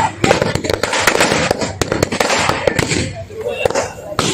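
A dense run of firecrackers going off, many sharp bangs a second, thinning out about three seconds in.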